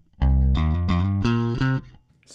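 Electric bass (a Fender Jazz Bass) played with a pick: a short phrase of about eight picked notes stepping between pitches, the riff's fret-shift passage demonstrated slowly, stopping just before the end.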